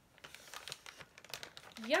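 Treat bag crinkling as it is handled: a string of small, irregular crackles.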